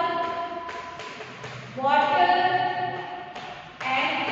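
Several voices chanting in long, drawn-out tones, loudest about two seconds in. A few light taps of chalk on the blackboard come between the phrases.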